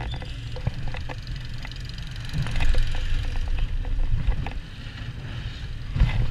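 Wild mouse roller coaster car running along its steel track, heard from on board: a steady low rumble with frequent clicks and clacks from the wheels and track, louder in the middle.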